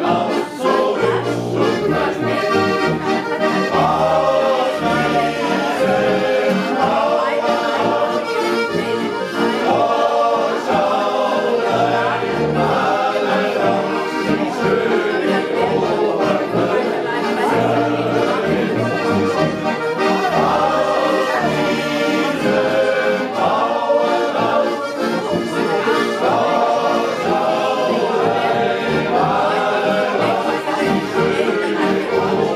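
A group of men singing a Bavarian folk song together in chorus, accompanied by an accordion whose low bass notes keep a steady, regular beat.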